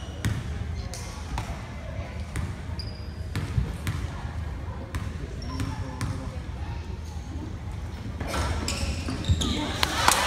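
Basketball bounced on a hardwood gym floor, a series of separate thuds, over voices in the echoing gym. The noise grows louder near the end.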